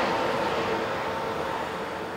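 Pickup truck towing an enclosed cargo trailer driving past on a city street, its road noise slowly fading as it moves away.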